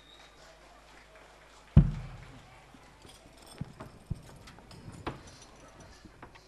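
Handling noise from the performers rising with their instruments: one heavy low thump about two seconds in, then a few scattered lighter knocks and clicks.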